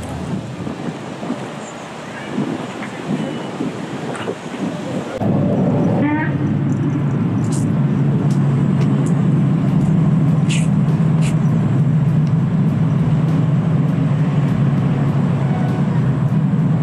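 Outdoor background noise; about five seconds in, a steady low motor hum sets in abruptly and runs on, with a few short high-pitched sounds over it.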